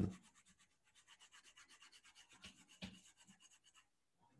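Faint, fast scratching of a stylus rubbed back and forth on a tablet screen while erasing handwriting, with one slightly louder tick a little before three seconds in.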